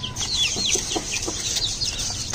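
Chicks peeping: a string of short, high-pitched chirps that slide downward, several a second.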